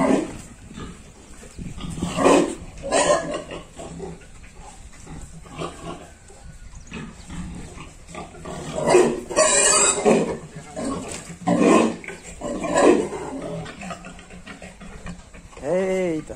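Pigs in a pen, a boar with gilts, giving a series of short grunts and calls. A louder call lasting about a second comes around nine seconds in.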